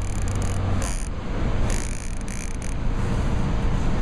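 Steady rushing noise of a fast river current, with a low rumble that drops away about a second in.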